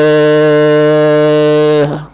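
A monk's voice through a microphone and loudspeaker, holding one long, steady sung note of a chanted Sinhala verse (kavi). The note cuts off just before the end.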